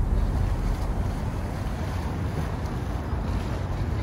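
Wind rumbling steadily on the microphone over open river-water ambience.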